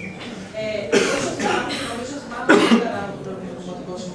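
A person coughing: two loud bursts of coughing about a second and a half apart, over low talk.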